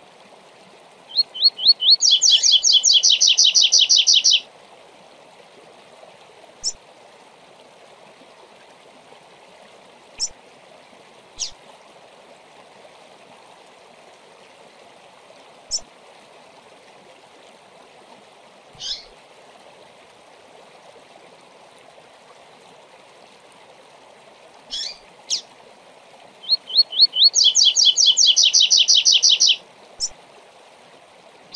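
Double-collared seedeater (coleiro) singing its "tui tui zel zel zel" song twice, about a second in and again near the end. Each song is a few short rising notes leading into a fast, ringing trill about two seconds long. Single short chips fall in the gaps between the songs.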